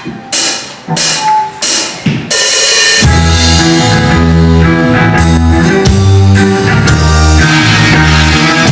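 A live rock band starting a song: four loud drum-and-cymbal hits about two-thirds of a second apart, then the full band comes in about three seconds in with drums, bass and guitar playing a steady heavy groove.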